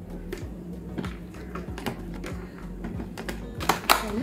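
Light plastic clicks and taps as a clear plastic punnet of strawberries and small plastic lunch containers are handled, louder and busier near the end. Background music with a steady beat plays underneath.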